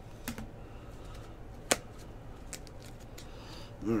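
A few sharp plastic clicks as stacked trading cards in rigid plastic holders knock together while being handled and sorted, the loudest about halfway through.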